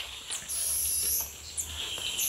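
High, thin whistling animal calls: one lasting most of a second from about half a second in, and another starting near the end, over a low rumble.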